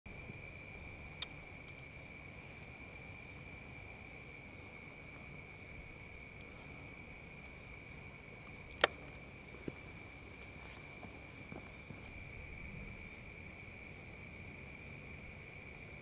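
Faint, steady high-pitched tone, a single unbroken pitch over low background hiss, with a small click about a second in and a sharper click about halfway through.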